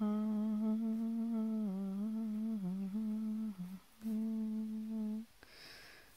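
A person humming a few long, held notes with small dips in pitch, pausing briefly just before four seconds in and stopping a little after five seconds, followed by a short soft hiss.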